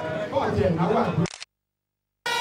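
A man's voice over a microphone, which cuts off abruptly about one and a half seconds in into dead silence, like an audio dropout or edit gap.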